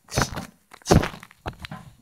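Handheld camera handling noise: knocks and rustles as the camera is swung about and brushes against clothing, in three short clusters near the start, about a second in and near the end.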